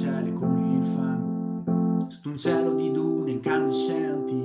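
Acoustic guitar strumming chords in a pop song, an instrumental passage between sung lines, with the chord restruck several times.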